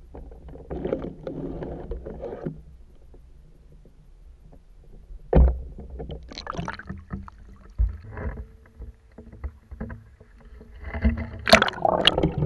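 Muffled underwater sound picked up through an action camera's waterproof housing: water sloshing and moving around the case, with dull knocks, a strong one about five seconds in and a louder, busier stretch near the end.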